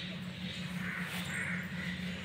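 Several short, harsh bird calls in quick succession, like cawing crows, over a steady low hum.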